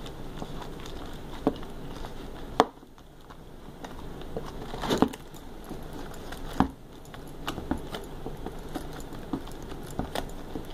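A small zippered cloth pouch being handled and closed over a plastic case: rustling, with a few sharp clicks and knocks and light jingling of its metal clip.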